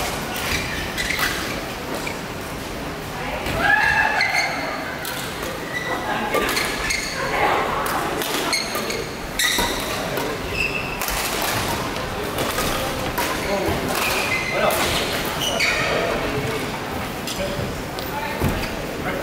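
Badminton rackets striking the shuttlecock in a rally: a string of sharp cracks at irregular intervals, echoing in a large hall.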